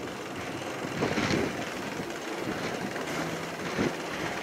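Bicycle rolling along a paved path, a steady rolling noise.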